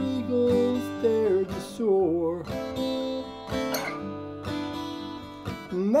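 Walden G630 CE acoustic guitar strummed in a steady rhythm, with a man's voice singing long held notes that slide in pitch over it.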